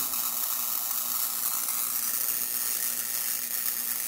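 High-voltage spark arcing continuously across the gap of a spark plug: a steady buzzing crackle. The spark is strong, driven through microwave-oven capacitors.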